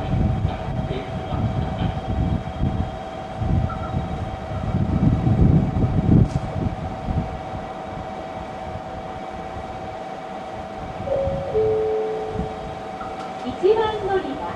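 JR Kyushu 883 series electric train pulling into a station platform, its running gear giving a low, uneven rumble that is loudest in the first half and then eases as it slows. A steady two-note tone runs under it and stops near the end, with a brief lower tone shortly before.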